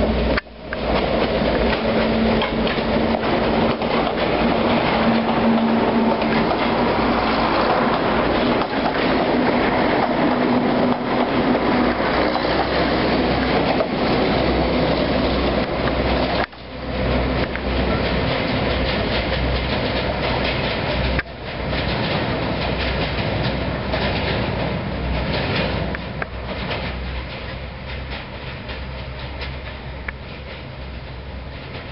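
Two coupled Incofer Apolo diesel railcars passing close, a loud running noise with wheels clattering on the rails. The sound breaks off sharply for a moment three times, then fades near the end as the train moves away.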